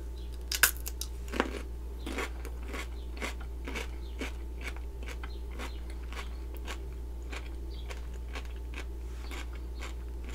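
A crisp bite into a raw cucumber spear about half a second in, then crunchy chewing at about two or three chews a second that grows fainter.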